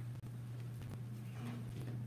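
Steady low room hum with a few faint taps and knocks, without speech.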